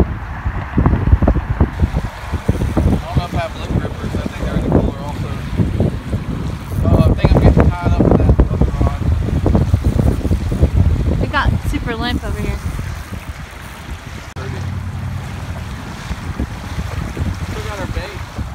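Strong wind buffeting the microphone in gusts, with small waves lapping at the shoreline underneath.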